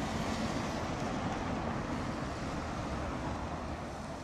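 Road traffic on a city street: cars driving past with steady engine and tyre noise.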